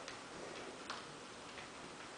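A few faint, sharp clicks of a golden retriever's claws on a hardwood floor as it moves about, the clearest about a second in.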